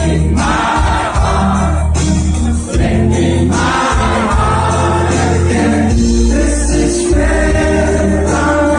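A live band playing a pop song with singing, amplified and loud, with a heavy bass line under the sung melody.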